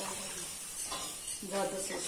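Milk being poured into flour cooking in a hot iron kadhai and whisked in with a wire whisk, the mixture sizzling as the white sauce starts.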